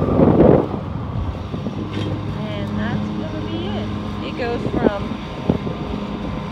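A steady low engine drone throughout, with a brief gust of wind on the microphone at the start and scattered short high chirps from about two seconds in.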